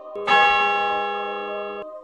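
A single bell strike, an added sound effect, that rings with several steady tones and slowly fades, then cuts off abruptly shortly before the end.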